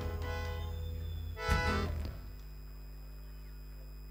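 Live band with accordion and percussion playing the last bars of a song, ending on one loud accented final chord about one and a half seconds in that rings briefly and stops. A steady low hum from the sound system remains afterwards.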